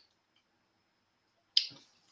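Near silence, broken by one short, sharp click about one and a half seconds in.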